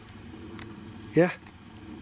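A steady low rumble, which the listeners liken to thunder, though there is no storm, or to distant guns or artillery.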